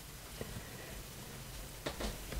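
Faint handling sounds of a crochet hook drawing yarn through crocheted stitches, with a soft tick about half a second in and another near the end, over a low hiss.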